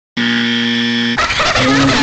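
A steady electronic buzzing tone lasts about a second and cuts off abruptly. It is followed by a baby crying over music.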